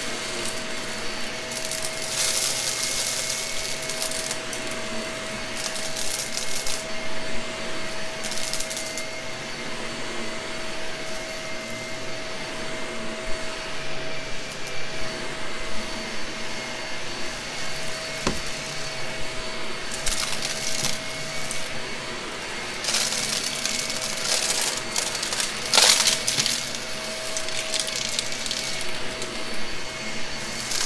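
Gray Shark vacuum running steadily with its brushroll on, sucking up a 'mermaid mix' mess-test spread of small debris. The debris rattles and crackles up the vacuum in repeated stretches, over a steady motor whine; the crackling is heaviest near the end.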